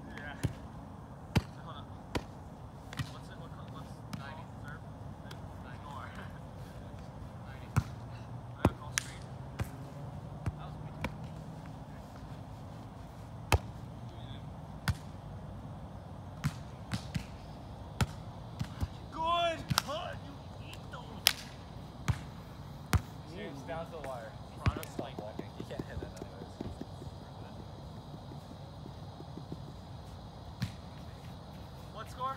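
Volleyball being played on sand: a string of sharp slaps as hands and forearms strike the ball, through several rallies. A player gives a short shout about two-thirds of the way through.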